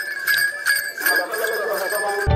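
A man's voice chanting a devotional bhajan, accompanied by small metal hand percussion ringing in quick strikes, about four a second.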